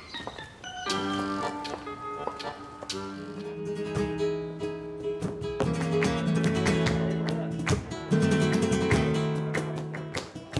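Flamenco music on a Spanish guitar: strummed chords with sharp strokes, accompanied by hand-clapping. The music comes in about a second in and grows louder about eight seconds in.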